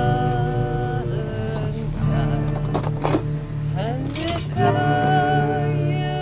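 People singing a slow song together to an acoustic guitar, holding long notes near the start and again in the second half.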